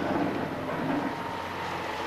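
Steady background rumble of distant machinery at a construction site, with a faint low hum and no distinct events.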